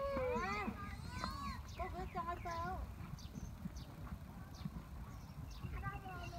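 People outdoors calling out in short exclamations with sweeping, rising-and-falling pitch during the first three seconds, over a steady low rumble. Faint short high chirps recur through the rest.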